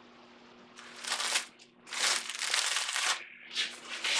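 Three bursts of rustling, rubbing handling noise, starting about a second in, as a set of mandolin tuners on their brass plate is handled and turned over in the fingers. A faint steady hum runs underneath.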